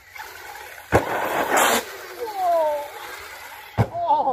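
Electric RC car on a dirt jump track: a sharp knock as it lands about a second in, then a rough hiss of tyres on dirt and its motor whine falling in pitch. Another sharp knock near the end.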